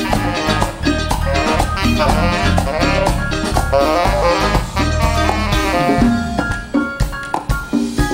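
Live Latin dance band playing an instrumental passage without vocals: drum kit, congas and bass under pitched melodic lines, thinning out to separate accented hits near the end.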